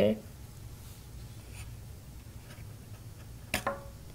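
Faint scratching and light clicks of hands handling a small circuit board and loose screws on a work mat. A brief voice sound comes near the end.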